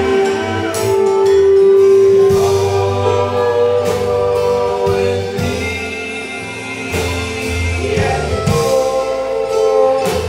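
Live string band playing: upright bass, banjo and acoustic guitar, with singing over them.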